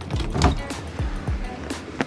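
Background music with a drum beat.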